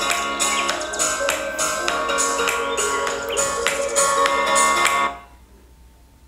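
Music with a steady beat of about three strokes a second, played from an Alexa smart speaker in the room. It stops about five seconds in, leaving a much quieter stretch.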